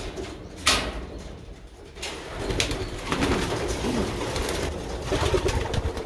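Racing pigeons cooing inside their loft, with low coos that rise and fall in the second half. A sharp knock comes about half a second in.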